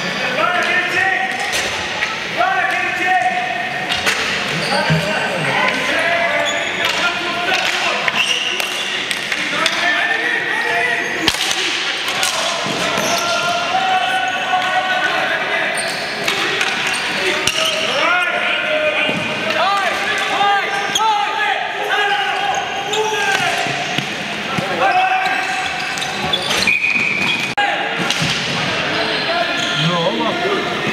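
Ball hockey play in an indoor arena hall: many overlapping voices of players and spectators shouting and calling out, with scattered sharp clacks of sticks and the ball hitting the floor and boards.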